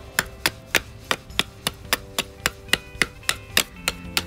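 A heavy 1095 high-carbon steel fixed-blade knife (Scar Blades Longbow series) chopping into the end of a wooden stake, sharp knocks about three to four a second.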